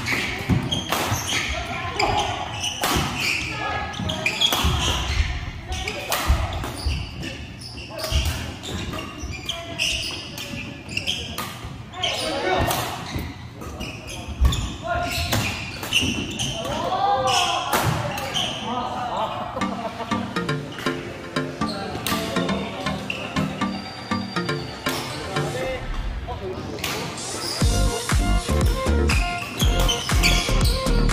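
Badminton rackets hitting a shuttlecock in a doubles rally, sharp hits at irregular intervals, with players' voices around the middle. Background music comes in after the middle and gets louder, with a beat, near the end.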